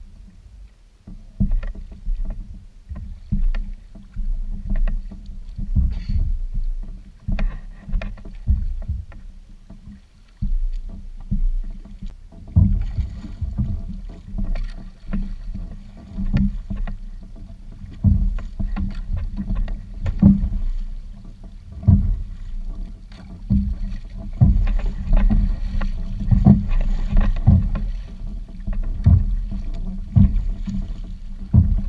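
A plastic fishing kayak, a Jackson Kraken 13.5, being paddled with a double-bladed paddle: irregular strokes through the water, with low knocks and thumps against the hull. The strokes come more often in the second half.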